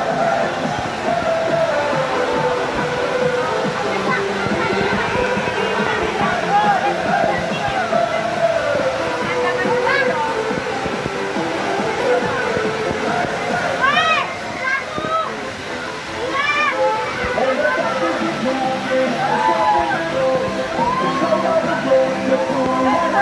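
Busy water-park din: a crowd of voices with shouts rising over it, music playing, and running water.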